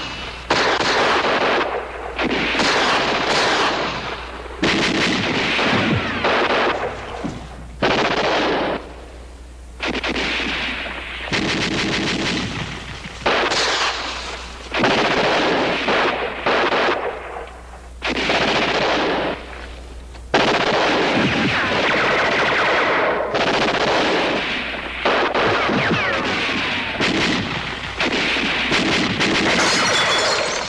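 Battle gunfire on a 1960s TV war drama's soundtrack: dense, rapid shooting in long bursts that break off and start again every second or two, over a low steady hum.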